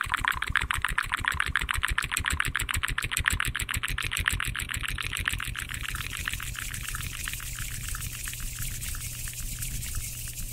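Fast, wet mouth sounds made right at the microphone, a steady run of about eight clicks a second that grows weaker after about the middle.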